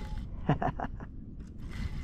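Fishing reel being cranked to bring in a hooked fish, its winding starting near the end, with a short vocal sound from the angler about half a second in.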